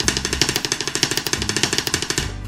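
Drumsticks playing a fast paradiddle rudiment (single, single, double), a rapid, even run of stick strokes at about fifteen a second.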